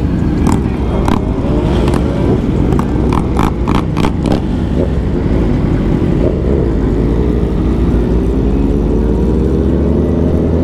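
Sport bike engine running at speed among a pack of motorcycles, with heavy wind rumble on the helmet-camera microphone. Several short sharp clicks come in the first four seconds, and from about six seconds in the engine pitch climbs steadily as the bike accelerates.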